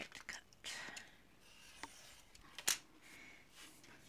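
Snap-off craft knife drawn along a metal ruler, slicing through a strip of paper card on a cutting mat: a short faint scrape, then a sharp tap a little after halfway through.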